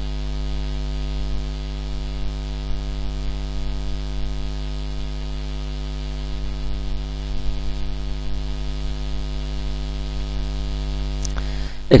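Steady electrical mains hum with a faint hiss beneath it.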